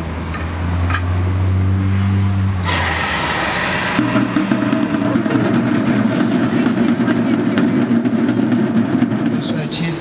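Confetti cannons firing with a sudden loud hissing blast about three seconds in, followed by a dense, continuous rumble while the confetti comes down. A low steady hum is heard before the blast.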